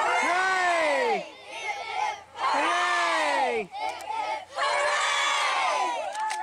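A crowd of children's voices calling out together in three long drawn-out cries, each swooping up and then down in pitch, at the close of their group song.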